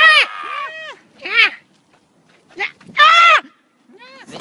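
Boys' voices imitating animal cries: a string of short wailing calls, each rising and falling in pitch, with a longer, loud call near the end.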